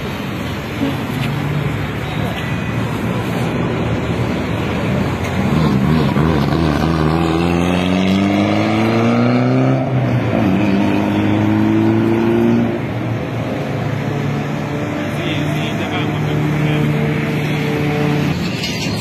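A car engine accelerating through the gears: the note rises steadily for about four seconds, drops at a gear change, then climbs again for about two more seconds. After that comes a steadier engine hum.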